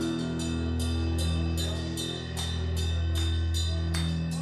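Live rock band playing an instrumental passage: long held low bass notes under steady cymbal strikes about three a second, the low note shifting about halfway through.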